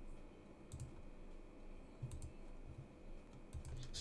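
Faint computer mouse clicks: a pair about a second in and a quick run of several near the end, with a few soft low thumps between them.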